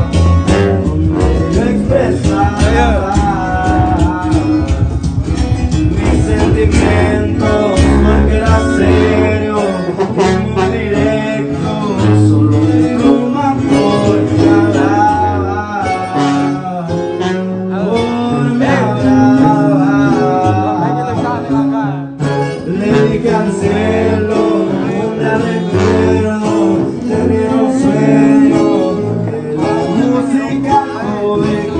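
Live band music: plucked guitars over a sousaphone bass line, with a voice singing.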